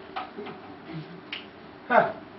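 Marker pen tapping and clicking against a whiteboard while writing: a few short sharp clicks, the loudest near the end.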